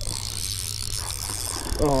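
Spinning reel being cranked to reel in a hooked bass: a steady mechanical whir of the gears and rotor with fine ticking.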